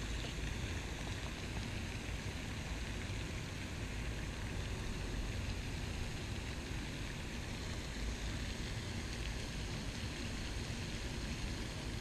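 Steady outdoor background noise: an even hiss with a low rumble beneath it, unchanging throughout, with no distinct events.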